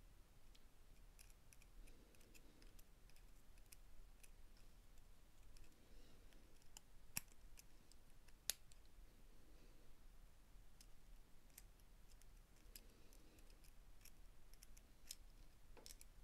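Faint, scattered small metallic clicks of steel tweezers touching the planetary gears and needle bearings of a cordless drill's gearbox as the gears are seated, with two sharper clicks about a second and a half apart midway.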